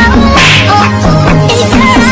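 Electronic dance music with a melody and a steady pulsing bass line. A brief noisy swish sound effect cuts through about half a second in.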